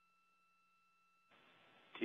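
Near silence: faint steady tones and a low hum, with a faint hiss coming up about two-thirds of the way in.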